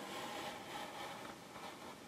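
A craft knife blade drawn along a metal ruler, slicing through cardstock: a faint, steady scratch that fades slightly.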